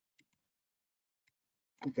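A few faint computer mouse clicks, two close together and a third about a second later, then a man's voice starts near the end.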